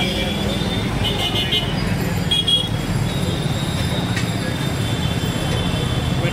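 Busy street ambience: a steady low rumble of traffic under background chatter, with two short horn toots about one and two and a half seconds in.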